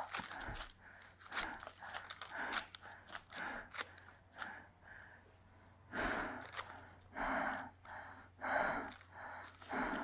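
Footsteps crunching through dry leaf litter, a step every half second to second, the steps louder and more regular in the second half.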